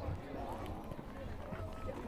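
Faint voices of players and spectators calling out across a football pitch, over a low steady rumble.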